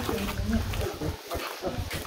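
Faint, indistinct voices over a low, uneven rumble.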